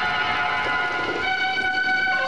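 Stage-musical music of long held chords, moving to a new chord a little over a second in.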